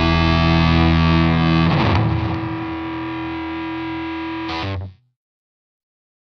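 The last chords of a rock song on distorted electric guitar. About two seconds in a new chord rings out and is held. A short final hit follows, and the music cuts off suddenly about five seconds in.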